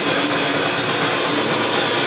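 A live rock band playing loudly, a dense wall of distorted electric guitar, bass and drums.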